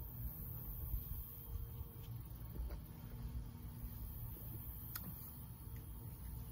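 A man sipping and swallowing beer from a glass, faint over a steady low rumble, with a single click about five seconds in.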